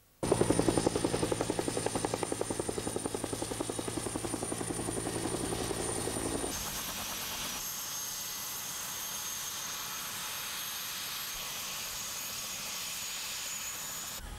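Helicopter running, starting abruptly. Its rotor blades beat in a rapid pulse for about six and a half seconds. After a sudden change it becomes a steadier rushing whine with high steady tones.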